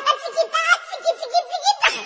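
High-pitched laughter, a run of quick rhythmic ha-ha pulses that waver in pitch.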